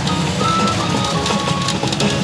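PA Ginpara Mugen Carnival pachinko machine playing electronic music and beeping sound effects for its hibiscus-mode scene, with held steady tones, over a rapid clicking.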